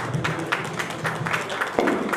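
Audience applauding, with a single thump near the end.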